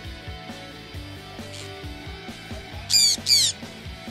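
Two loud squawks from a sun conure in quick succession about three seconds in, over quiet background guitar music.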